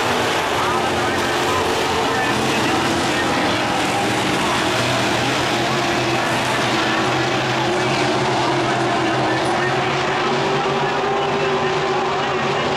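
Dirt-track modified race cars' V8 engines running hard around the oval in a continuous, steady drone, the pitch drifting a little as the cars go by.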